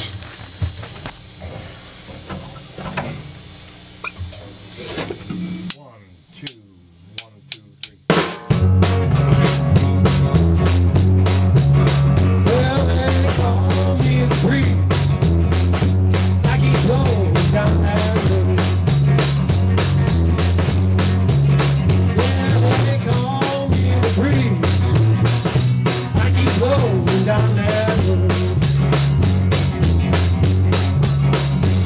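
Amateur rock band playing in a small room, with drum kit and electric guitars. After a few quieter seconds, four quick clicks count in, and about eight seconds in the full band starts, loud, with a steady driving drum beat and a repeating low line.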